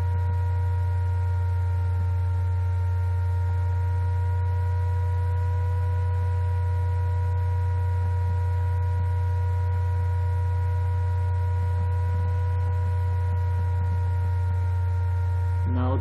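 Laptop cooling fan picked up by the built-in microphone: a steady low hum with several steady whining tones above it, unchanging throughout.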